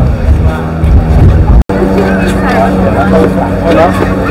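Wind buffeting the microphone with people's voices nearby. About one and a half seconds in the sound cuts out for an instant, and after that nearby people are talking over a steady low hum.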